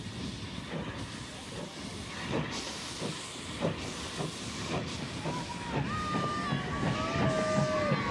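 Steam locomotive pulling away with its train: a steady hiss of steam from around the cylinders with exhaust chuffs about a second apart that come quicker and grow louder. High steady tones join in about five seconds in.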